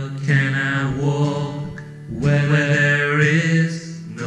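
A man singing a slow song line in two long, drawn-out phrases over a steady low held note.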